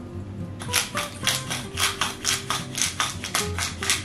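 A hand-twisted pepper mill grinding pepper: a quick, even run of rasping crunches, about four a second, starting about half a second in, over background music.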